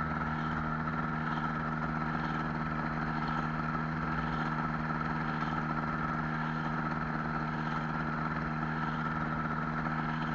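Air Command gyroplane's engine running steadily at an even speed, with no change in pitch, as the gyroplane rolls along the ground.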